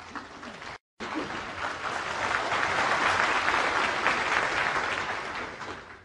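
Snooker arena audience applauding the end of a 42 break. The applause swells after a brief drop-out just under a second in, peaks midway and fades away near the end.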